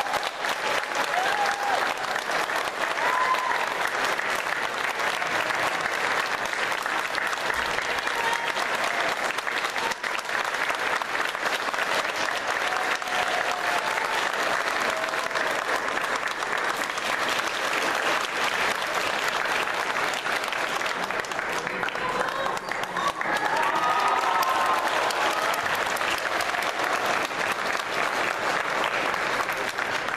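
Audience applauding steadily, with voices whooping and calling out here and there; the applause swells briefly about three-quarters of the way through.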